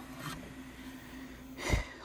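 Failing Seagate Cheetah 15K.7 hard drive spinning: a faint steady hum over a light hiss, which the owner likens to a read head scraping a platter. The hum stops about three-quarters through, followed by a short soft puff.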